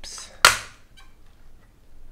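The plastic top case of an Apple Keyboard II snaps free of the lower case with one sharp, loud plastic crack about half a second in, after a brief scrape. A faint tick follows.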